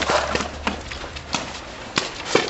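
Paintball markers firing: a handful of sharp pops at irregular intervals, the two strongest a little under a second in and about halfway through.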